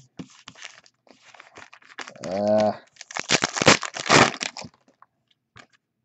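Foil trading-card pack wrapper crinkling and tearing in a quick run of bursts lasting about a second and a half, starting around the middle, with light rustles of cards being handled before it.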